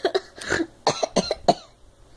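A girl coughing, about six short coughs in a row in the first second and a half.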